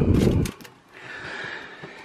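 A cardboard toy box handled and set down by a shelf: a brief low thump in the first half-second, then faint rustling.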